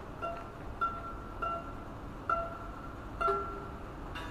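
Exposed strings of a dismantled upright piano plucked or twanged by hand: about five short ringing notes, mostly on the same pitch, with a lower note near the end.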